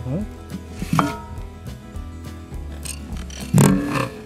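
Background music with a steady low beat, over two louder scraping knocks from hands working dry sandy soil around tin cans: one about a second in and a stronger one near the end.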